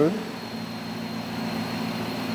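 A 2006 Dodge Charger R/T's 5.7-litre Hemi V8 idling steadily and smoothly, heard from over the open engine bay, with a faint steady high whine above it.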